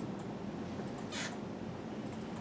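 Steady low room noise in a lecture room during a pause in speech, with one brief soft hiss a little over a second in.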